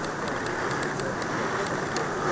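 Steady outdoor ambient noise from the footage's live sound, with faint scattered clicks.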